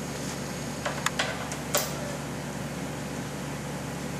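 Steady low mechanical hum with three short sharp clicks in the first two seconds, the last the loudest, as an air hose is coupled to the pneumatic air motor of a split-frame pipe beveling machine.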